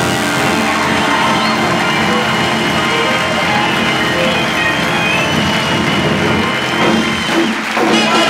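Big band with brass playing an instrumental passage at full volume, with a high note held from about two seconds in until near the end.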